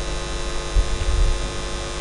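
Steady electrical mains hum in the microphone and sound system, an even buzzing drone of several fixed tones with no other event.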